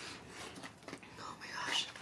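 Faint eating sounds: soft chewing and mouth noises, breathy and unpitched.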